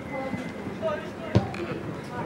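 A football kicked once on the pitch: a single sharp thud just over a second in, the loudest sound here, amid players' scattered shouts.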